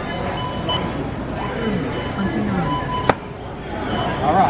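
Supermarket checkout ambience: background music and distant voices, with one sharp click about three seconds in.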